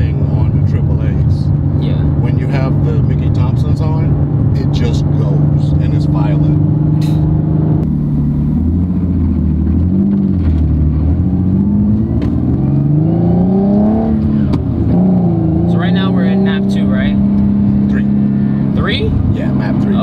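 Turbocharged Nissan 370Z Nismo's VQ37 V6 heard from inside the cabin on the move: steady running, a drop in engine pitch about eight seconds in, then the pitch rising as the car accelerates, falling sharply at a gear change, and settling into steady running again.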